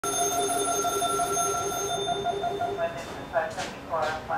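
Fire station dispatch alarm sounding for an emergency call: a rapid warbling pulse of two alternating tones, about six or seven a second, over a steady higher ring. It cuts off just under three seconds in and a voice follows.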